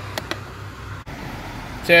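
Low steady background noise with two faint light clicks early on, then a man's voice starting near the end.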